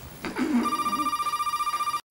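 Telephone ringing with a high, fast-trilling ring that starts about half a second in, after a brief voice.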